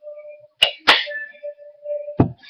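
Two sharp crinkling snaps, about a third of a second apart, from a foil drink pouch squeezed in the hands.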